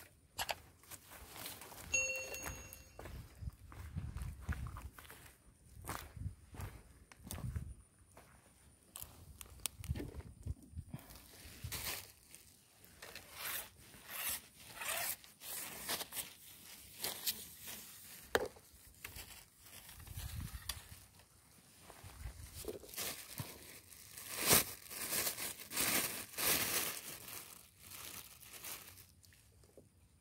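Irregular footsteps crunching and rustling through dry undergrowth and dead palm fronds. A short electronic chime sounds about two seconds in.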